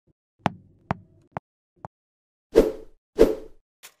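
Logo-animation sound effects: four sharp pops about half a second apart, each quieter than the last, then two louder whooshing thuds. A run of small ticks begins near the end.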